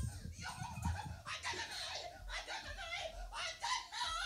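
Indistinct talk and laughter of several people in a room.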